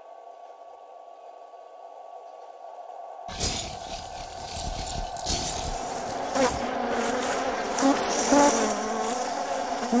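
A faint drone of steady held tones, then about three seconds in a dense insect-like buzzing starts suddenly and grows louder, with a wavering hum in it.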